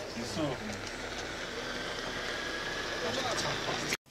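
Indistinct voices of people talking quietly over a steady hiss of background noise with a low hum underneath.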